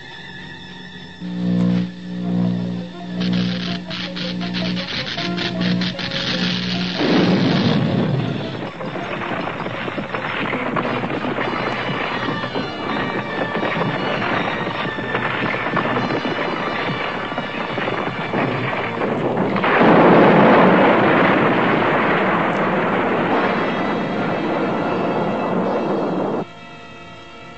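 Cartoon background score: a repeated low musical figure in short pulses for the first several seconds. A dense rumbling noise then rises under the music about seven seconds in and swells louder about twenty seconds in.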